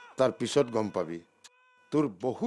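A man's voice: a few short, drawn-out vocal sounds in the first second, a pause with a faint steady tone, and his voice again at the very end.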